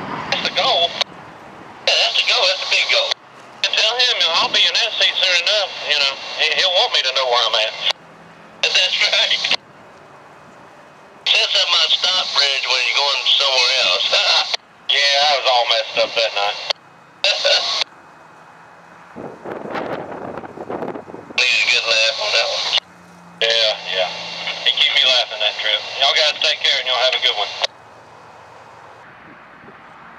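Railroad two-way radio chatter coming over a scanner: tinny, clipped voice transmissions that cut in and out abruptly, with short gaps of quieter background between them.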